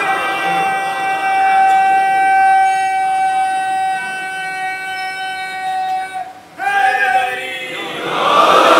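Public-address feedback: a loud, steady, high-pitched tone held at one unchanging pitch for about six seconds, then cutting off. Voices follow near the end.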